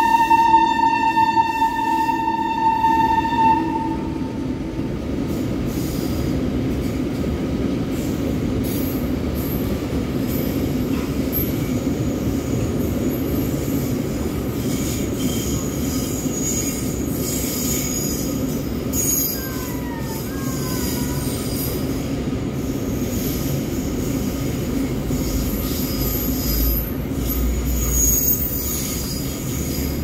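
Goods train wagons rolling past at steady speed: a continuous rumble of wheels on rail, with intermittent high wheel squeal and a brief squealing glide about two-thirds of the way through. The WAG-9 electric locomotive's horn holds one note at the start and stops about four seconds in.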